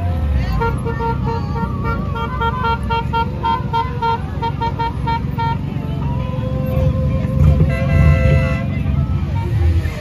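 Parade motorcycles and touring trikes rumbling past at low speed, with a horn beeping a quick run of short notes for about five seconds, then longer held horn blasts.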